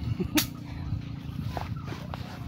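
A single sharp click about half a second in, over a steady low hum.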